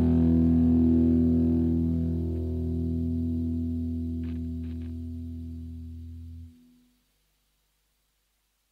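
The closing chord of an Oi/street-punk song on distorted electric guitar, left to ring out and slowly fade, then cut off about six and a half seconds in, leaving silence.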